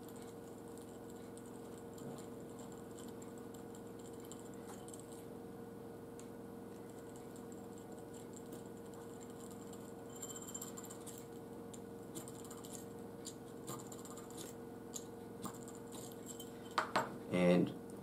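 Faint small clicks and ticks of a precision hand drill (pin vise) being twisted by hand through a matchstick held in a wooden drilling jig, over a steady low hum.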